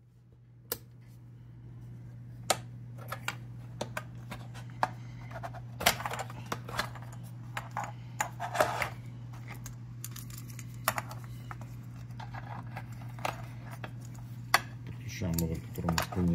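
Hands handling Denso engine control modules and a plastic wiring connector on a bench: scattered light clicks and knocks of the metal cases and connector, over a steady low hum.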